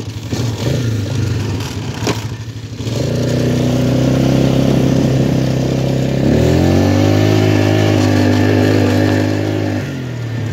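ATV engine pulling hard under throttle while the quad is ridden over grass. It gets louder about three seconds in, climbs in pitch around six seconds, holds high, then eases off near the end. A sharp knock comes about two seconds in.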